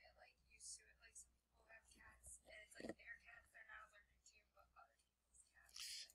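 Faint, distant speech, barely above silence, like a student asking a question far from the microphone.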